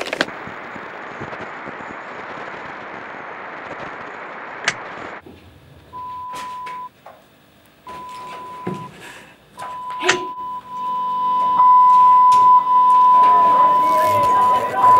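Television static hissing for about five seconds and cutting off suddenly, then a steady single-pitched test tone that comes in broken stretches and is then held, louder near the end, with a few clicks.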